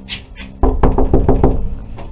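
Knocking on a panelled interior door: a loud, quick run of about eight knocks, starting a little over half a second in.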